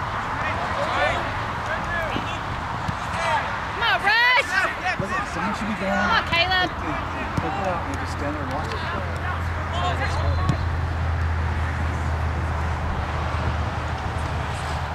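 Distant, unintelligible shouts and calls from players and spectators at an outdoor youth soccer match over a background murmur, with the loudest calls coming in a cluster about four to six and a half seconds in. A low steady hum sets in about eight seconds in.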